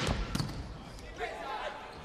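A volleyball struck hard once, about a third of a second in, during a rally, over steady noise from the arena. A few short wavering pitched sounds follow a little past the middle.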